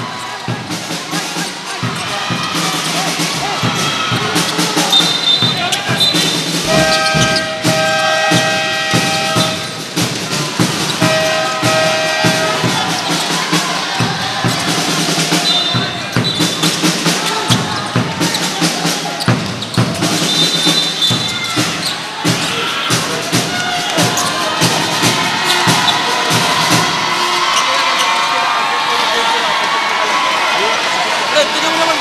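Basketball gymnasium din: crowd noise with music playing over it and many short thuds, with a few held musical notes about a third of the way in.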